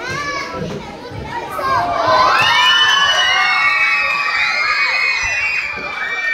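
A crowd of children shouting and cheering, many high voices overlapping. The noise swells about two seconds in and eases off near the end.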